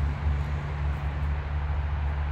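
Road traffic: a passing vehicle's steady low rumble with a hiss of tyre and road noise.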